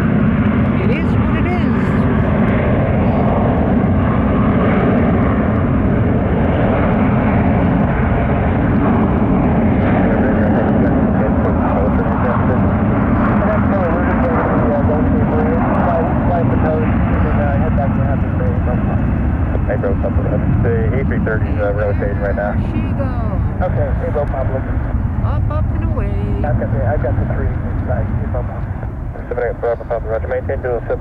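SAS Airbus A330 twin-engine jet on its takeoff roll and lift-off, engines at takeoff thrust. The jet noise is loud and steady, easing slightly near the end.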